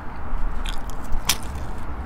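A bite into the crust of a Tim Hortons cheese pizza, with a few short crunches, the sharpest a little past a second in.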